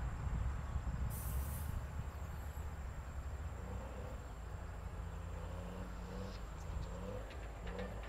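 Motor graders' diesel engines running with a steady low rumble as the blades push sandy soil. A brief hiss comes about a second in, and a faint wavering tone with short higher calls enters over the second half.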